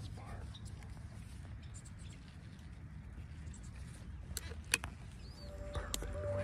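Low, steady rumble of wind on a phone's microphone, with soft whispered speech and a few sharp clicks from the phone being handled in the last two seconds.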